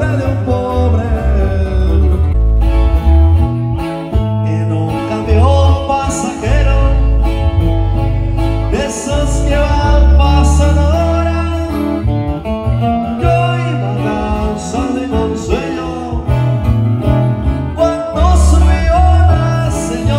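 A small live band playing a sierreño-style song on acoustic guitars over a steady bass-guitar line.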